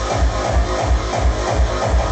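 Drum and bass DJ mix played loud over a club sound system, heard from the dance floor. A heavy kick and bass hit about four times a second under a busy mid-range rhythm.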